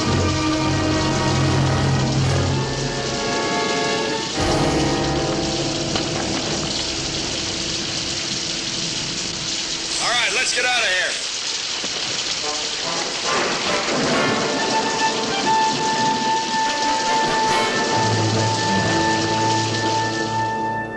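Steady rain falling, with an orchestral film score playing over it in held, shifting chords.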